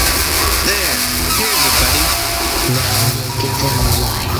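Live avant-garde electronic music (techno/IDM): a dense, noisy texture over a low bass, with sliding voice-like tones about a second in and a heavier bass coming in near the end.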